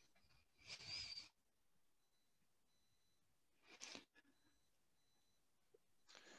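Near silence on a video call, broken by two brief faint noises, about a second in and again near four seconds.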